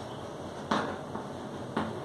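Chalk tapping and scratching on a blackboard while writing, with two sharper taps about a second apart and a few lighter ones.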